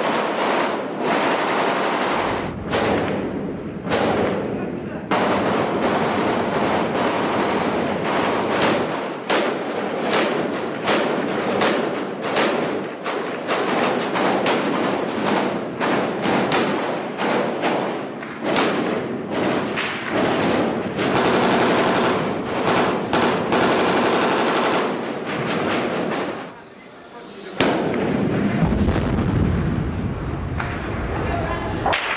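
Sustained small-arms gunfire: a dense run of rapid shots and automatic bursts, with a quieter gap of about a second near the end.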